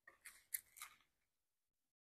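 Faint, crisp rustles of Bible pages being handled, three brief ones within the first second.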